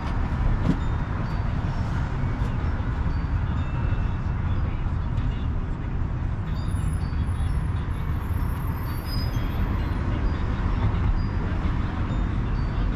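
Steady street traffic noise, a continuous low rumble of passing vehicles.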